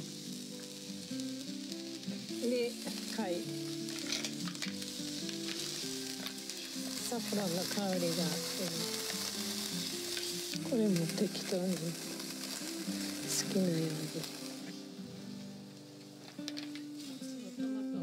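Garlic and clams sizzling in olive oil in an earthenware hot pot, stirred with a spatula. The sizzling dies down near the end. Quiet background music plays beneath.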